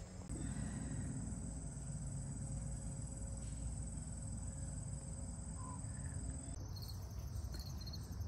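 Outdoor garden ambience of insects: a steady high-pitched trill over a low steady rumble. About two-thirds of the way in the trill gives way to short high chirps repeating about twice a second.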